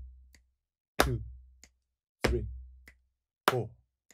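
Body percussion rock rhythm played by one person: chest slaps and hand claps alternating with finger snaps at a steady tempo. A hard hit with a low thud from a right-foot stomp comes about every 1.25 s, with a light snap between each pair of hits.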